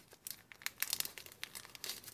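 Small clear plastic bag of vellum pieces crinkling as it is handled, a run of quiet, irregular crackles.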